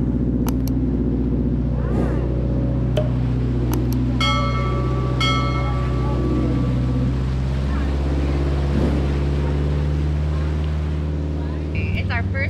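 Motorboat engine running steadily at speed, heard over the rush of the wake. There are two short high ringing tones about four and five seconds in.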